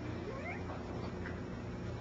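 Steady low room hum during a pause in speech, with a faint, short rising cry about half a second in.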